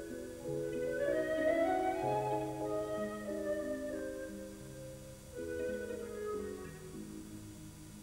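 Soft background music: held chords with a slow melody line above, growing quieter in the second half.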